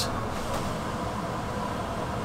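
Steady, even background hum inside the upstairs lounge of a double-decker tour bus, with no distinct clicks or changes.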